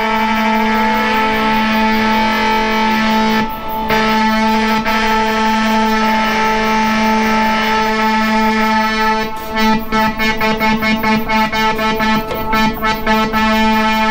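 Behringer 2600 analog synthesizer sounding a steady, buzzy held tone rich in overtones. VCO-1 is pushed too high in the mix, so the tone turns clangorous, "almost like a ring mod all its own". About two-thirds of the way in it breaks into a rapid fluttering stutter.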